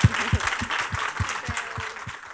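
Audience applauding, with a few louder nearby claps coming about three times a second.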